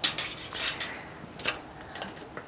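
Scissors cutting thin metal tooling foil, with the foil crinkling as it is handled. There is a sharp snip about a second and a half in.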